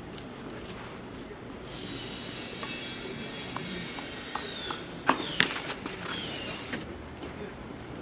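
A tennis ball struck sharply by rackets, two hits about five seconds in, the second ringing. Before it comes a high, hissing squeal that falls slowly in pitch for about three seconds, from an unseen source.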